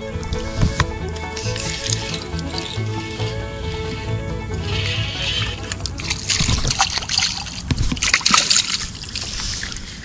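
Background music with steady sustained tones. From about halfway through, water splashes and sloshes at the shoreline as a hooked white bass is grabbed by hand and lifted out of the water.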